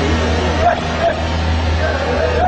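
Tow truck engine running steadily as it tows an SUV on its rear lift. Two short high yelps sound over it, the first about two-thirds of a second in and the second about a second in.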